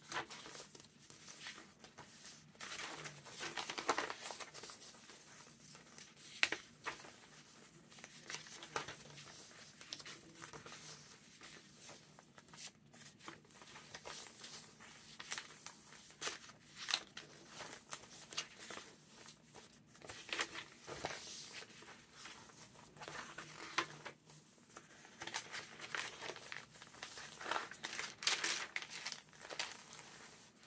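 Stiff, aged paper pages of a thick handmade junk journal being turned and smoothed by hand: irregular paper rustling and crinkling, with a few sharper crackles along the way.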